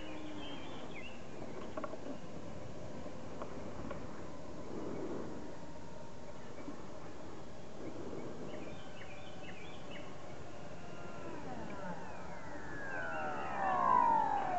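Electric ducted fan of an RC foam Viggen jet whining faintly in the distance, then growing louder with a falling pitch as it sweeps in low past near the end.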